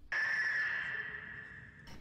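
A high, steady tone from a film soundtrack. It starts suddenly, holds level for nearly two seconds, then fades.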